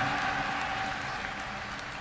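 Audience applauding, dying away gradually.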